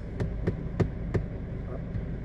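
Fingers tapping on a car's plastic dashboard, four quick taps about a third of a second apart, then stopping. A steady low hum from the car's cabin runs underneath.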